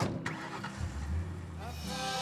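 A short knock just after the start, then a low rumble that begins about a second in and stops near the end.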